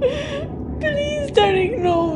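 A woman crying: three or four high, wavering whimpering cries with breathy gasps between them.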